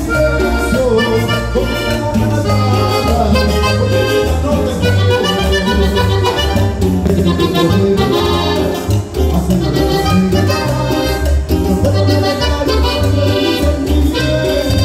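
A live Latin dance band playing loud amplified music with keyboard, timbales and electric guitar over a steady, heavy bass beat and a moving melody line.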